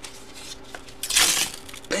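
Paper envelope rustling as it is handled and opened, a short burst about a second in.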